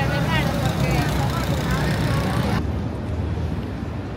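Busy city street ambience: a steady traffic rumble with passers-by talking. About two and a half seconds in it changes abruptly to a quieter, duller street background.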